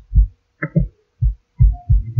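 A run of about seven short, dull low thumps at irregular spacing.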